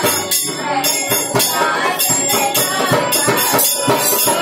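Group singing a Hindu devotional bhajan to harmonium and dholak, with a steady beat and jingling hand percussion.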